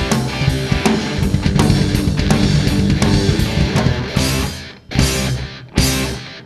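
A rock band plays the song: electric guitars over a drum kit, with no singing. About five seconds in, the sound drops out and the band comes back in short stop-hits.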